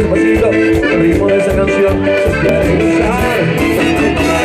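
Live cuarteto dance music played loud: a steady, driving beat under sustained melody notes.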